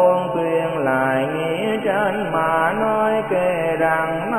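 Slow, melodic Buddhist chant music: a sung line of long held notes that glide from one to the next over a steady low tone.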